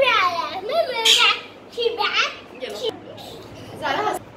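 Young children's voices: short, high-pitched calls and chatter several times over, the pitch sliding up and down.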